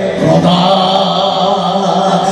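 A man singing a Sufi devotional kalam into a microphone, holding one long, nearly steady note.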